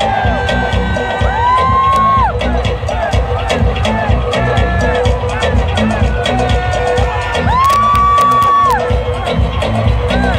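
Loud concert music over a large PA system: a heavy bass beat with a repeating melodic figure, and a high note that swoops up, holds about a second and drops, once about a second in and again about seven and a half seconds in. The crowd is cheering.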